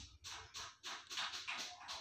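Faint, fast, rhythmic breathy panting, about three to four pants a second, running steadily.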